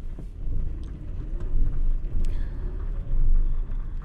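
Low rumble of a car's engine and road noise heard from inside the cabin as the car turns around, the loudness rising and falling unevenly.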